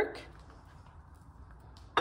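Quiet kitchen room tone with a few faint clicks, and one sharp knock just before the end, like a hard object set down on a stone counter.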